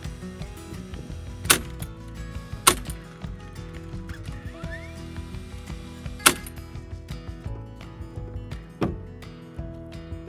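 Framing nailer firing nails into doubled 6x2 timber, three sharp shots spread over several seconds. A softer knock comes near the end, over steady background music.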